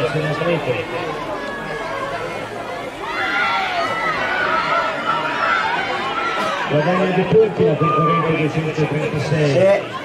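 Several voices talking and calling at once, with a man's voice coming in about seven seconds in.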